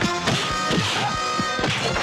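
Dubbed fight-scene sound effects: about four punch-and-kick hits in quick succession, each a sharp impact with a short falling swoosh. They play over a steady orchestral film score.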